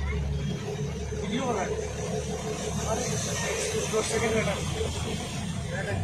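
Motor vehicle engines running as vehicles drive through deep floodwater, with water washing and sloshing around them. The low engine hum is strongest in the first second as a truck passes close by.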